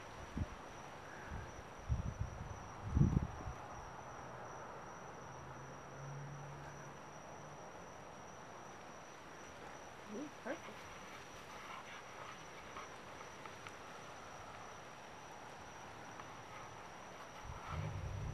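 Faint night ambience with a steady, unbroken high insect trill, like crickets. A few low bumps come in the first few seconds.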